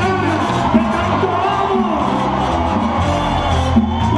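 Live merengue band playing at full volume with a male lead vocalist singing into a microphone, and crowd voices rising from the audience.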